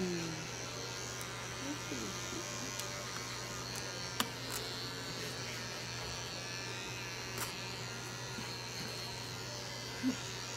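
Small electric pet clipper running with a steady buzz, trimming the overgrown hair between a cat's paw pads. Two sharp clicks about four and seven seconds in.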